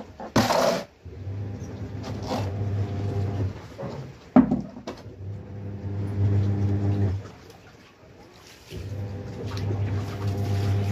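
Twin-tub washing machine motor humming in spells of two to three seconds, with short breaks between. Over it, wet clothes and plastic tubs are being handled: a loud rustle or splash just after the start and a sharp knock about four seconds in.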